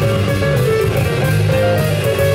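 Live instrumental band music: melodic lines over a moving bass line and regular drum hits.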